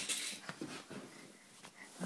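Faint short sniffs and snuffles of a basset hound, heard through a tablet's speaker on a video call, with a few small clicks.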